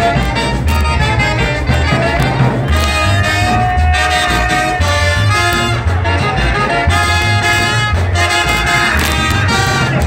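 Yucatecan jarana music from a brass-led dance band, with trumpets and saxophones carrying the melody over a steady bass beat.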